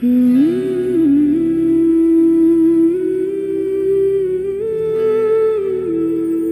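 A woman humming a slow, wordless melody in long held notes over soft background music, coming in suddenly at the start.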